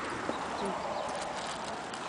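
Footsteps scuffing and crunching on stony dirt ground, with light scattered ticks from grit and small stones underfoot.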